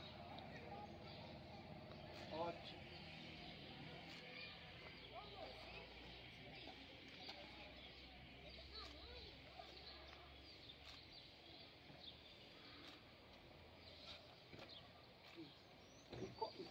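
Near silence: faint outdoor background with distant voices.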